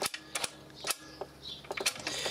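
About five sharp mechanical clicks from the start/stop/auto control lever and changer mechanism of a BSR record player as it is worked by hand.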